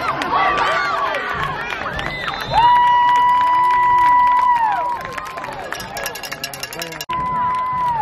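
Sideline crowd of spectators and children shouting and cheering, with long steady horn blasts over it: the loudest is a held blast of about two seconds near the middle, and a shorter one starts near the end.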